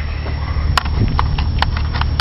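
A handful of short, sharp clicks and knocks as a metal rifle magazine is handled and slid into a fabric magazine pouch on body armor, over a steady low rumble.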